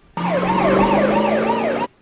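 Police car siren in a fast yelp, rising and falling about four times a second. It starts suddenly and cuts off sharply near the end.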